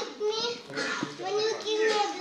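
A toddler's voice making high-pitched, sing-song babbling calls, several drawn-out notes with short breaks between them.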